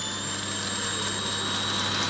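Electric grinder motor spinning a printer stepper motor as a generator at high speed: a steady high-pitched whine that creeps slightly higher in pitch, over a low electrical hum.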